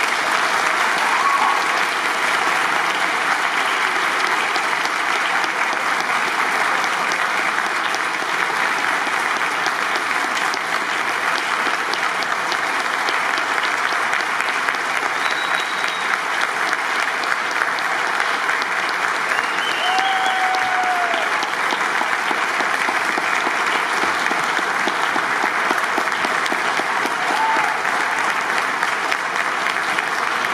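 Concert audience applauding steadily for the band, with a few brief calls from the crowd standing out above the clapping.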